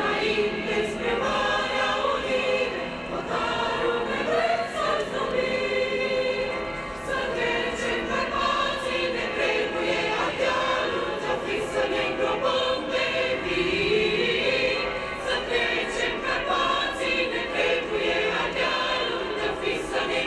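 A choir singing a continuous piece, the voices holding long sustained notes.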